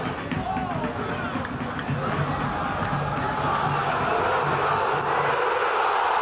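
Football stadium crowd noise, a dense din of fans cheering and shouting, growing louder from about two seconds in as an attack nears the goal.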